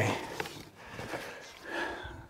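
Quiet handling sounds: a cardboard box being shifted and opened, with a small knock about half a second in, as a metal sawmill log stop is lifted out of it.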